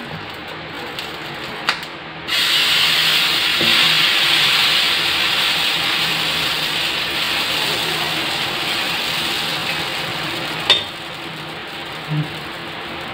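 Pesarattu batter sizzling on a hot iron tawa as it is poured and spread with a ladle. The sizzle starts suddenly about two seconds in and slowly fades, with a single sharp click near the end.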